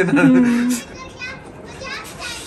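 Speech: a voice ends on a long drawn-out syllable in the first second, then faint voices and chatter remain in the background.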